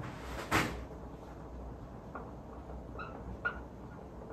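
Dry-erase marker writing on a whiteboard: faint scratching with small squeaky chirps in the second half. A short breathy noise about half a second in is the loudest thing.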